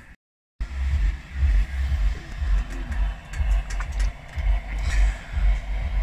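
Wind buffeting an outdoor microphone: an irregular low rumble in uneven gusts that starts abruptly about half a second in, after a brief dead silence.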